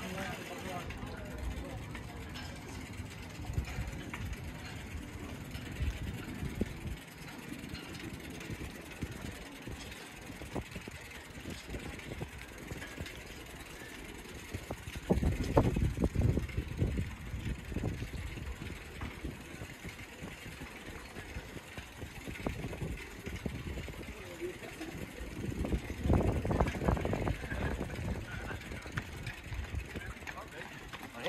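Outdoor ambience heard while cycling: a steady low rumble that swells loudly twice, about halfway through and again near the end, with voices in the background.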